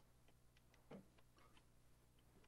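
Near silence: room tone, with one faint click about a second in and a few fainter ticks.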